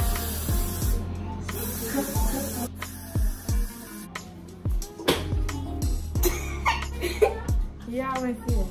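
Aerosol hair spray hissing in two sprays onto braids, a short one at the start and a longer one of about a second and a half just after, over background music with a steady deep beat.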